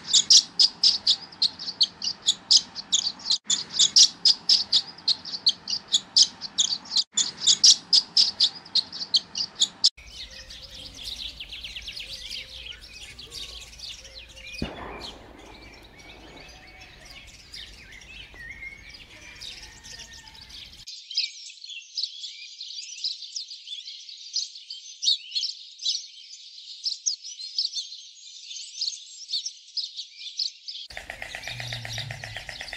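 Small birds chirping and twittering in three spliced recordings. First comes about ten seconds of fast, evenly repeated high chirps, swallow twittering. Then come a denser tangle of chirps and, from about twenty seconds in, a thinner high chirping.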